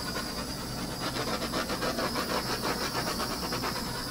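Small handheld torch flame running steadily over wet acrylic paint to pop bubbles: a steady hiss with a fast, even flutter.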